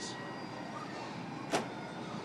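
Steady room noise with a faint hum, and one sharp click about one and a half seconds in.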